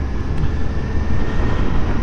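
Steady wind and engine noise from a moving motorcycle at road speed, heavy in the low end, with no other distinct event.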